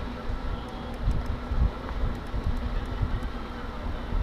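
Wind buffeting the microphone in uneven low rumbling gusts, over a steady outdoor background with a faint hum.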